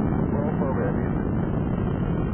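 Space Shuttle Atlantis at liftoff: the steady low rumbling roar of its two solid rocket boosters and three main engines as the stack climbs.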